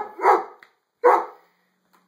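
American Staffordshire pit bull barking at a vacuum cleaner: three short, loud barks in quick succession, the last a little over a second in.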